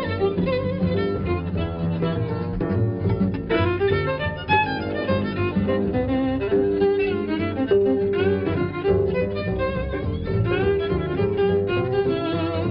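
Swing jazz violin playing a bowed melody with sliding notes, accompanied by acoustic and electric guitars and a double bass.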